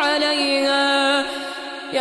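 A man reciting the Quran in the melodic, chanted tajweed style, holding one long drawn-out note that fades away about a second and a half in. A new phrase begins with a rising pitch at the very end.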